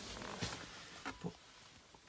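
Faint rustling and a few light knocks as the cardboard boxes of a central locking kit are handled close to the phone.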